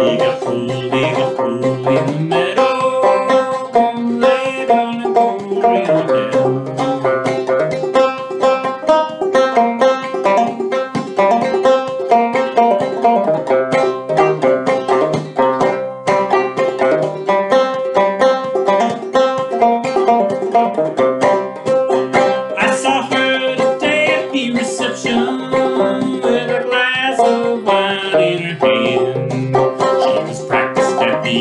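Five-string banjo played clawhammer style in Triple C tuning: a lively old-time instrumental passage of fast plucked notes over a repeated ringing high drone note.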